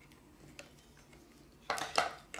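Faint clicks of small plastic parts and wires being handled, then a short, louder clatter near the end.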